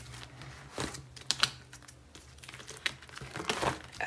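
Plastic photocard binder sleeves crinkling and rustling as the pages are turned by hand, with a few short, sharp clicks scattered through.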